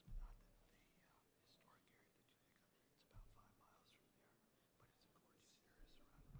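Near silence: faint, hushed talk between a few people. A soft low thump comes at the very start, and another about three seconds in.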